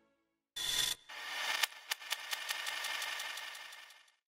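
Closing logo sound effect: a short rasping burst about half a second in, then a rustling, scraping texture with sharp ticks about four to five times a second that fades away at the end.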